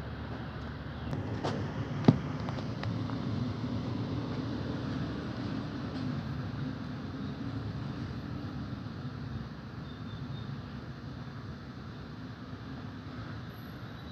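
Steady low rumble of a heavy vehicle's engine running, with a single sharp click about two seconds in.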